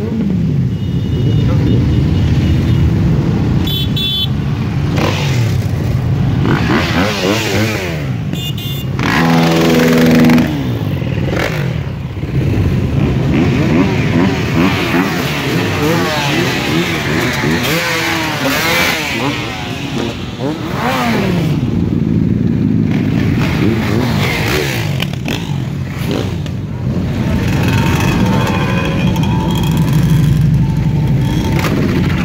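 A column of motorcycles riding past one after another, sport bikes followed by dirt bikes and supermotos, their engines running and revving up and down as each goes by. The loudest pass comes about ten seconds in.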